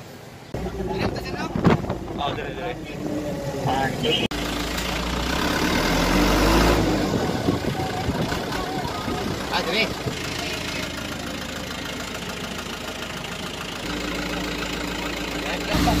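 A motor vehicle engine runs steadily under indistinct voices, with the audio cutting abruptly a couple of times.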